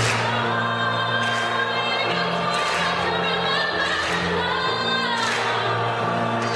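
A mixed choir of young male and female voices singing together, holding long chords that shift every second or so.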